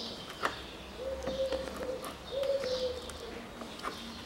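Two drawn-out pigeon coos, the first about a second in and the second just after two seconds. There is a sharp click about half a second in, and faint high chirps.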